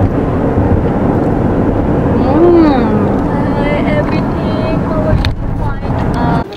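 Steady road and engine noise inside a moving car's cabin, with a few voices heard over it around the middle.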